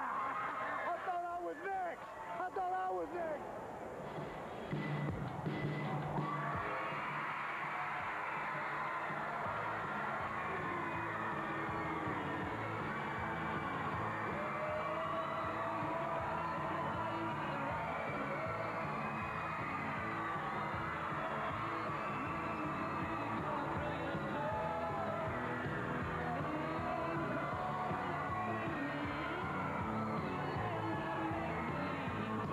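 Several men shouting and whooping in celebration for the first few seconds, then, from about six seconds in, steady music playing over a cheering crowd of fans.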